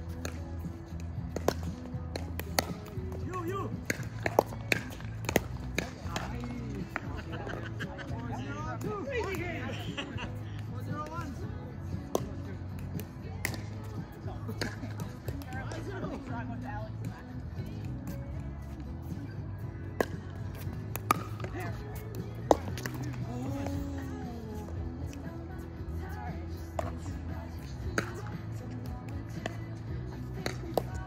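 Pickleball paddles striking the plastic ball during rallies: sharp pops at irregular intervals, heard over music and people's voices.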